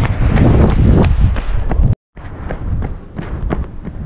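Running footsteps on a paved path, about three strides a second, over a heavy rumble of wind and handling on the handheld camera's microphone. The sound cuts out suddenly for a moment near the middle, then the footfalls continue a little quieter.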